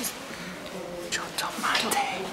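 Quiet human voices speaking in the background, lower than the narrating voice, with a few short falling inflections in the second half.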